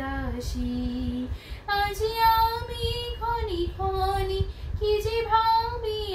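A woman singing a Bengali song solo and unaccompanied, holding long notes that slide between pitches.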